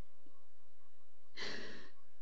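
A person's short, breathy sigh, about one and a half seconds in.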